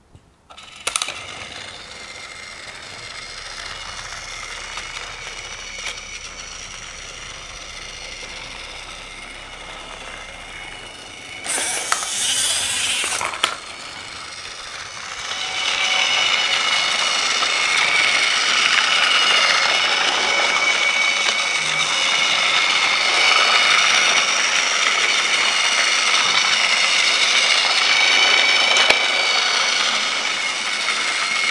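Battery-powered Fisher-Price Take-n-Play Diesel toy locomotive running on plastic track: a steady whine from its small motor and gears. A brief louder burst of noise comes about twelve seconds in, and the whine is louder from about sixteen seconds on.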